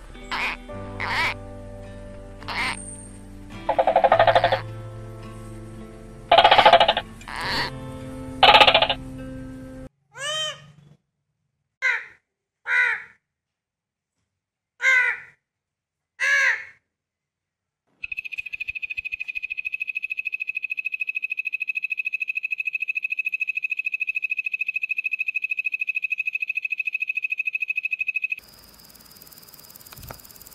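For the first ten seconds, short animal calls sound over background music. Then come five separate squawks from a blue-and-gold macaw, with silence between them. After that a steady, high insect trill runs for about ten seconds and cuts off suddenly near the end.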